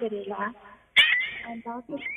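A voice over a telephone line, cut into about a second in by a sharp click and a loud, high-pitched call that falls in pitch, with a second falling call near the end.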